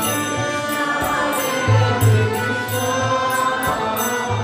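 Devotional kirtan music: a harmonium holding sustained chords, a voice chanting a mantra, and a mridanga drum. The drum's deep bass strokes come in a short cluster about halfway through.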